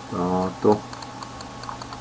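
A brief hummed vocal sound, held on one pitch for under half a second, then a short second syllable. Faint light ticks recur about two to three times a second throughout.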